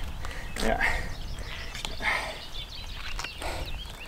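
Wind rumbling on the microphone, with a brief spoken "ja" near the start and a few short rustles after it.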